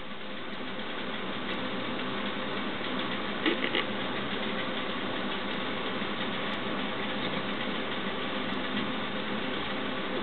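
A steady background hum with hiss that holds even throughout, with a brief faint sound about three and a half seconds in.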